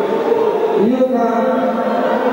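Shouting voices in a reverberant sports hall, several overlapping, with one long drawn-out shout held for about a second near the middle: spectators and coaches calling out during a judo bout.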